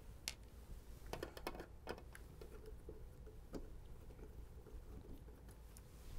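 Faint, irregular small clicks and taps of a screwdriver working screws out of a sheet-metal shield panel.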